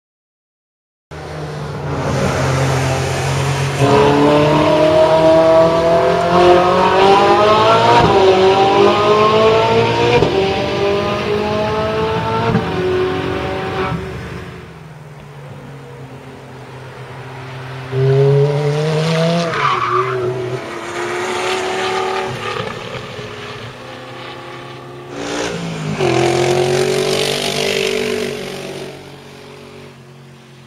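High-performance sports car engines on a racetrack, revving hard as the cars pass, with the revs climbing and dropping at gear changes. The sound starts about a second in and swells again twice later as further cars go by.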